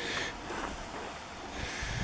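Breathing and a short sniff from the person holding the camera, close to the microphone, heard twice (at the start and near the end), over a faint steady outdoor hiss.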